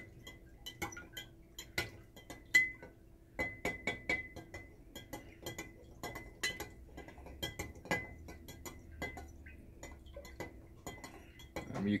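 A stirrer clinking against the inside of a glass jar of water as it is stirred, in quick irregular strikes, two or three a second, some with a short glassy ring. Oxalic acid crystals are being dissolved in distilled water and are not yet fully dissolved.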